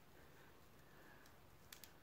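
Near silence: room tone, with two or three faint ticks near the end.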